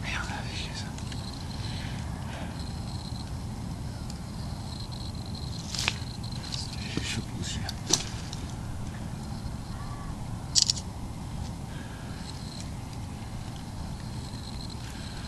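A steady low outdoor rumble with faint low voices and three sharp clicks, about six, eight and ten and a half seconds in; the last click is the loudest.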